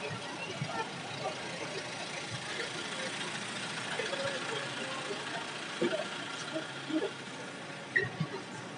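Street ambience: a steady hum of vehicle noise, with voices of people nearby talking.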